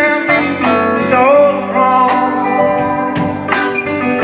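Band music in an instrumental passage: guitar with a steady beat, no vocal line.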